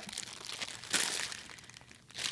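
Clear plastic bag of wax tarts crinkling as it is turned over in the hands, loudest about a second in.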